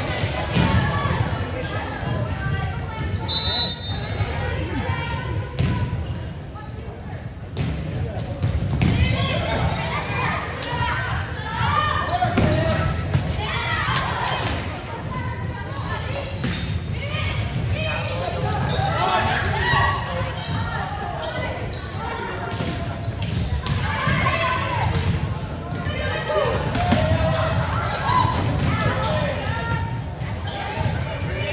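Volleyball play in a gymnasium: the ball struck and bouncing again and again, with players' and spectators' voices throughout, echoing in the large hall.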